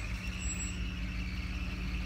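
Vehicle engine running with a steady low rumble and hum, heard from inside the cabin.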